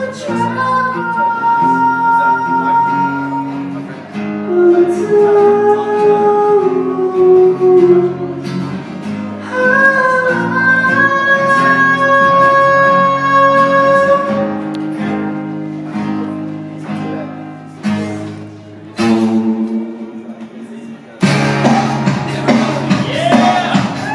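Male vocalist singing long held notes over a strummed acoustic guitar in a live performance. Near the end the music drops lower, then a louder sound cuts in abruptly.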